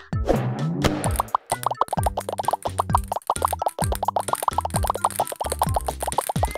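Cartoon plop sound effects over bouncy children's background music: a rapid stream of short pops from about a second and a half in, as a flood of small balls spills out.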